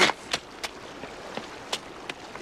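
A handful of sharp, irregular clicks and snaps from the film soundtrack, the first the loudest, over a faint steady hiss.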